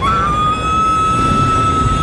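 A woman screaming: one long, high scream that starts abruptly, rises slightly, then holds a steady pitch.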